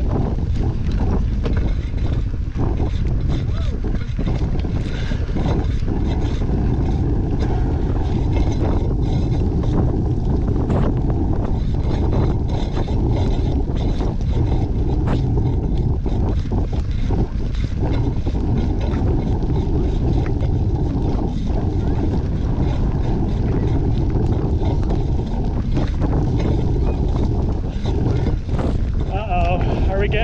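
Steady wind rumble on the microphone of a camera riding on a moving bicycle, with the tyres running over a wet dirt road and frequent short clicks and rattles from the bike.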